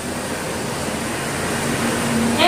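Steady, even hiss of background noise with no distinct strokes or knocks.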